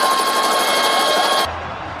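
Rapid machine-gun fire sound effect, a dense rattle of shots that cuts off suddenly about one and a half seconds in.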